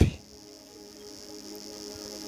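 A pause in amplified speech: a faint sustained musical chord held underneath a steady high-pitched hiss.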